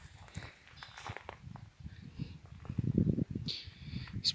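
Footsteps on mown grass with soft rustling and handling knocks, getting louder in the last second or so.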